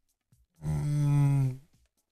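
A man's voice holding a flat, drawn-out hesitation sound, "eee", for about a second in a pause between phrases.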